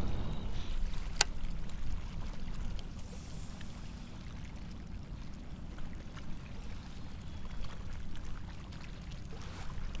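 Water washing along the hull of a kayak under way on its trolling motor: a steady low rush, with one sharp click about a second in.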